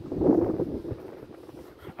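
Wind buffeting the microphone, with a louder gust in the first half second that then dies down to a low rumble.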